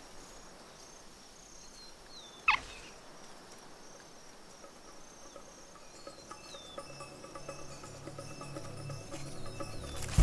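Quiet natural ambience with faint, high, short bird-like chirps. One short, sharp call falls steeply in pitch about two and a half seconds in. Soft sustained music fades in over the second half.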